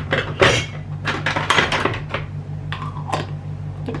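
A plastic screw lid being picked up, set on a glass jar and screwed down: a string of clicks, knocks and short scrapes of plastic on glass.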